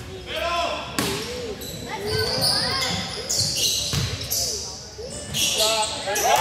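A basketball bouncing a few times on a hardwood gym floor, with sneakers squeaking and players' voices echoing in a large gym.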